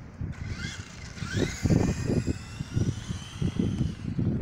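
Revell Control Scorch RC car's electric motor whining and rising in pitch several times as it accelerates, over an irregular low rumbling as it runs across wet asphalt.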